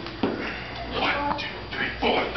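Several voices calling out, with short high squeals and whoops that slide in pitch, about a second in and again near the end.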